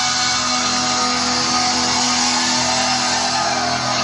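Live hard rock band with electric guitars playing loud and steady, holding sustained notes and chords, heard from within the audience.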